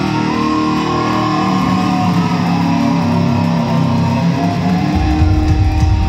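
Electric guitar solo played live on stage, sustained and bending notes ringing out. About five seconds in, a heavy low note comes in underneath.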